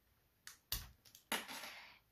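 Three sharp plastic clicks, the last followed by a short scraping rub, as the keyring tab is pulled off a plastic emergency car tool to uncover its seatbelt-cutter blade.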